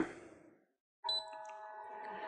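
Anycubic Wash and Cure station beeping once, about halfway in, as its cure cycle is started, then running with a steady hum of several tones from its turntable motor.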